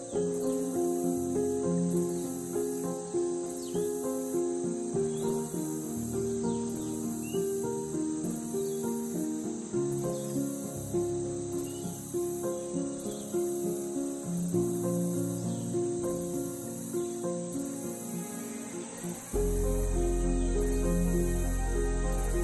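Meadow crickets chirping steadily in regular high pulses, over gentle plucked-string background music; a deep bass comes into the music near the end.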